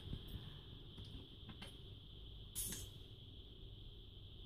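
Faint clicks of a chromatic harmonica's metal slider and plates being handled and fitted back together, with one short scratchy noise about two and a half seconds in, over a steady high hum.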